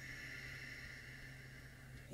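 A faint, long breath out: a soft steady hiss that slowly fades, over a low steady hum.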